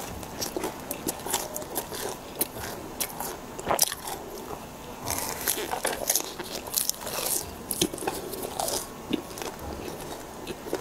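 Close-miked mouth sounds of a person biting into and chewing a grilled, sauce-coated mushroom, with a steady run of irregular wet crackles and crunchy clicks that thicken about halfway through.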